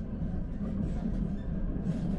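Rail transit train running along the track, heard from inside the passenger car: a steady low rumble.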